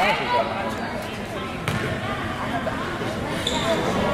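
A basketball bouncing on a hardwood gym floor at the free-throw line, with one sharp bounce a little before halfway, over voices echoing in the gym.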